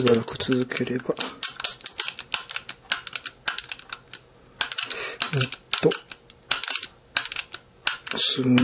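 Many quick, irregular metal clicks and small rattles from the parts of a rifle lower receiver being handled and fitted during trigger assembly.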